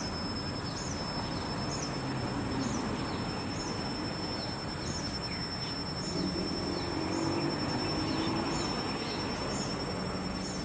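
Insects calling outdoors: a thin steady high-pitched buzz, with a short high chirp repeating about once or twice a second, over a steady rushing background noise. A faint low hum comes and goes, strongest about six to eight seconds in.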